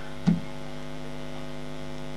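Steady electrical mains hum in the microphone and recording system, a constant low buzz with many even overtones, with one brief short sound about a quarter of a second in.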